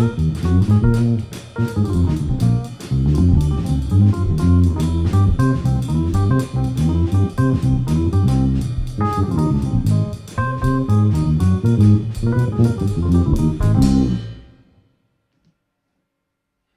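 A jazz trio of electric bass guitar, drum kit and keyboard playing an up-tempo tune with steady cymbal strokes and a walking bass line, all stopping together on the final note near the end.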